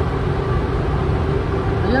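Paint spray booth ventilation running: a steady low rumble with a faint hum. A voice says a word near the end.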